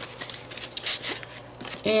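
Thin plastic stencil sheets being handled and laid onto a painted journal page: light rustling and scraping of plastic on paper, with a few crisp crinkles near the middle.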